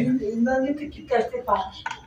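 A person's voice speaking softly, with a few light clinks in the second half.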